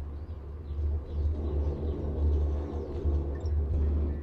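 Steady low rumble from a moving ropeway cabin as it passes a cable tower, swelling and easing a little as it goes.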